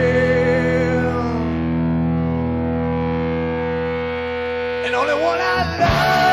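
Live rock band: a held, distorted electric guitar chord with a wavering note on top rings on and slowly dies down. About five seconds in, rising guitar slides sound, and the full band comes back in at the very end.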